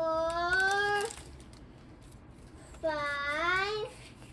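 Two drawn-out, sliding vocal calls, each about a second long. The first comes right at the start and rises slightly; the second, near the end, dips and then rises.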